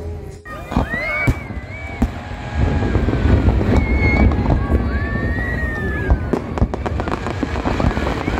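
Fireworks going off close by: a dense stream of sharp crackling pops and bangs over a constant low rumble, getting louder about two and a half seconds in, with several rising whistles, each about a second long, heard over it.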